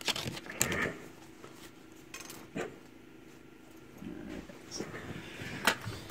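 Scattered small clicks and rustles of a foil trading-card booster pack being handled and cut open, the loudest near the start and near the end.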